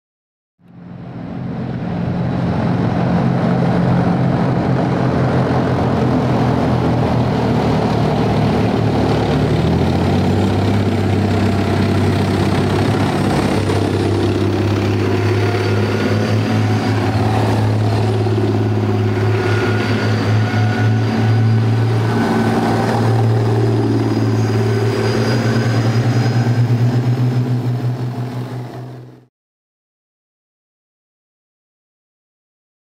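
Challenger 2 main battle tank's V12 diesel engine running as the tank drives, a steady low drone that settles lower and stronger about ten seconds in, with faint rising whines above it in the second half.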